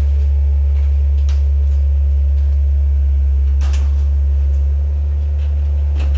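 A heavy machine's engine running with a steady deep drone while a cab-over camper is being crushed: a crunch of breaking camper body a little past halfway, with smaller cracks about a second in.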